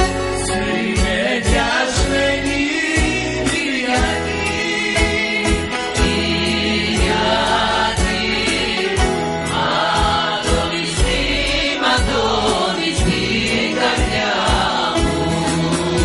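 Women's choir singing a folk song, accompanied by a bouzouki and guitars plucking a steady rhythm.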